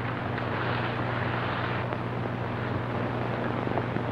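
Steady low hum and hiss of an old film soundtrack, with a few faint clicks.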